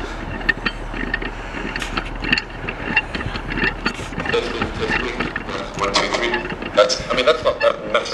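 Voices of people talking on the platform, clearer in the second half, over the steady low rumble of a stationary HST diesel power car idling, with scattered clicks and knocks.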